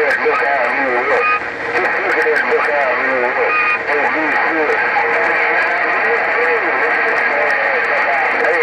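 A President HR2510 radio's speaker plays other operators' voices on 27.085 MHz, heard through a steady band of static that makes the words hard to make out.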